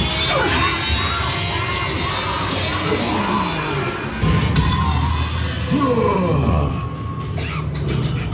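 Haunted-house maze soundtrack: eerie music layered with gliding, voice-like scare effects over a deep rumble. The rumble swells suddenly about four seconds in and eases off a couple of seconds later.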